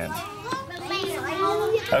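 Children's voices chattering over one another.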